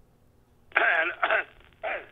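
After a moment of near silence, a caller's voice comes in thin and narrow over the telephone line with a short vocal sound. The voice starts again near the end as the greeting begins.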